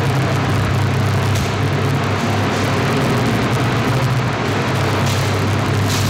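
A steady low hum with a hiss over it.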